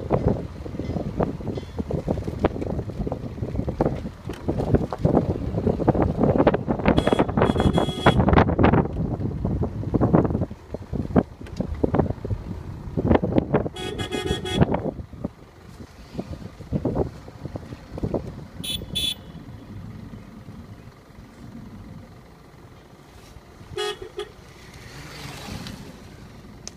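Ride in a moving road vehicle: a low, gusty rumble of road and wind noise on the microphone, louder in the first half, with a vehicle horn tooting several times, a long toot about halfway through and short toots later.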